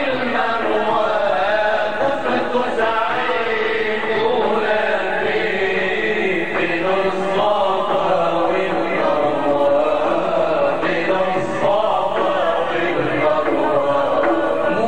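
Male singers chanting an Arabic religious nasheed together in one continuous, steady melodic line.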